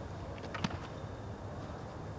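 Steady low outdoor background rumble, like distant traffic, with a couple of short sharp clicks a little over half a second in.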